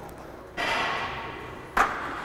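A rushing noise starts about half a second in and fades over a second. Near the end comes one sharp clank of metal, a weight plate being handled.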